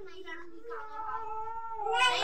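A young girl's voice holding one long, steady wordless note for about a second and a half, after a few short vocal sounds.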